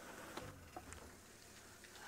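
Near silence: a faint low hum with a few faint, short ticks.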